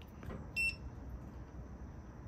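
Touchscreen controller of a Pit Boss Titan pellet grill giving one short high electronic beep about half a second in as its screen is tapped.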